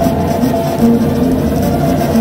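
Live Mexican banda music: a brass section of trombones and sousaphone playing held notes over a steady low rhythm.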